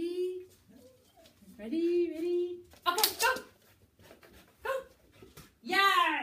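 A dog giving a run of high, drawn-out yelping barks: about five calls, one of them held for about a second. These are the excited vocalisations of a dog held back and eager to be sent to its task.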